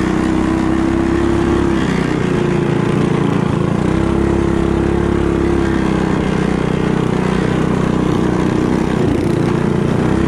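Built mini bike's small engine running hard at high revs under racing load, its pitch held fairly steady with brief dips where the throttle eases about two seconds in, around three and a half seconds, and near the end.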